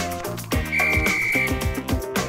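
A loud two-finger whistle: one steady high note held for under a second, about halfway through. It plays over background music with a steady beat.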